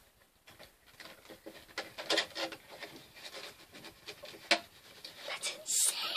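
Quiet handling sounds of a personalized Kellogg's spoon and its packaging: light rustling with a few small knocks, the sharpest about two seconds and four and a half seconds in, and a short rustle near the end.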